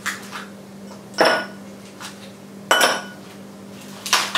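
Ice cubes dropping into an empty tall drinking glass: two sharp clinks about a second and a half apart, each ringing briefly.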